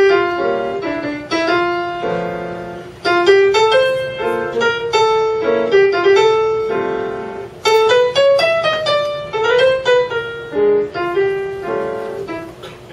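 Acoustic grand piano playing a jazz song melody in the middle register, in short phrases of struck notes that ring and fade between them.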